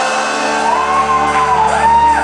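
Live gospel band letting its final chord ring out as the drums stop, with a long rising-and-falling shout from a voice over it.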